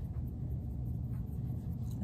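Faint rubbing and tapping of hands handling polymer clay on a tabletop, over a steady low hum.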